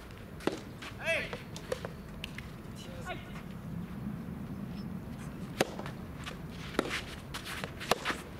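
Sharp taps of a rubber soft tennis ball: one just after the start, then three more spaced about a second apart in the second half, the last as a serve begins. There is a short shout about a second in.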